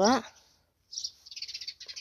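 A small bird chirping in a quick, high-pitched run, starting about a second in.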